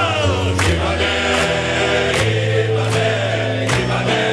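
Men's choir singing, with long held low notes over a steady beat.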